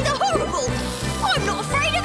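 Cartoon soundtrack: background music with wordless vocal cries and wails gliding up and down over it.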